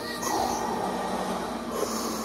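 Slow, heavy breathing through a full-face CPAP mask, hissing like Darth Vader: one long breath, then another beginning near the end, over the faint steady hum of the CPAP machine.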